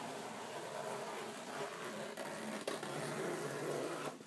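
Zip on a soft fabric pet crate being drawn open, heard as a steady rustling noise with a few faint clicks.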